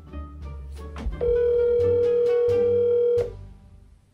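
A phone call's ringback tone: one steady ring lasting about two seconds, heard as the outgoing call waits to be answered. Light background music of plucked notes and bass plays under it and fades out near the end.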